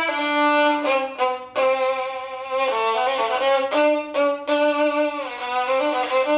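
Old German three-quarter violin from the Wilhelm Kruse workshop, played solo with the bow: a melody of held notes with brief breaks between bow strokes, and one note sliding down in pitch about five seconds in.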